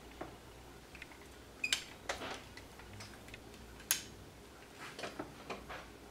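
Quiet room tone with faint rustles and a few small clicks of hands handling hair, the sharpest click near four seconds in.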